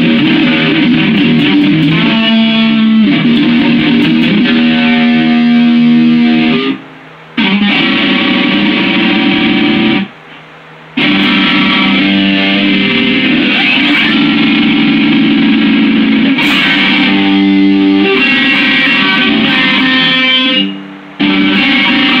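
Stratocaster-style electric guitar played loudly, with sustained, ringing chords and notes. It breaks off briefly three times: about seven seconds in, at about ten seconds for nearly a second, and shortly before the end.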